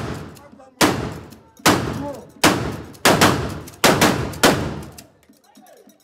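A run of seven loud, sharp bangs about two-thirds to four-fifths of a second apart, each ringing out before the next. They stop about five seconds in.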